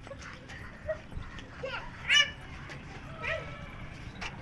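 A toddler's short, high-pitched squeals and shouts, three or so in a few seconds, the loudest about two seconds in.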